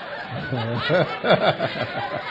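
People laughing at a joke, the laughter swelling to its loudest about a second in.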